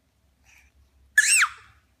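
A human baby lets out one short, high-pitched squealing cry a little over a second in, rising and then falling in pitch: an upset protest over the bottle.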